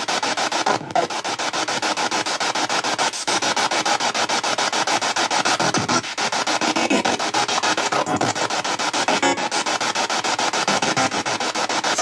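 Spirit box (a radio scanning through stations non-stop) played through a Bluetooth speaker: a loud rush of radio static chopped into rapid pulses many times a second, with brief snatches of broadcast sound that the captions render as words ('Time to work. It's over.').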